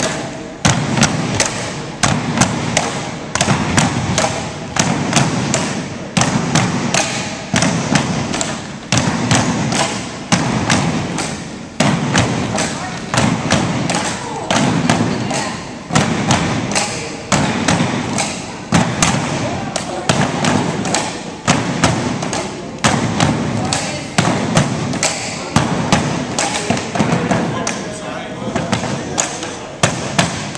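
Tinikling poles knocked on wooden blocks and clapped together by the seated pole-holders in a steady repeating rhythm, about one cycle of sharp knocks each second, with the dancers' feet thudding on the wooden gym floor.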